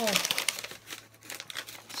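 Shopping bag crinkling and rustling as a hand rummages inside it: a dense run of crackles that thins out after about a second.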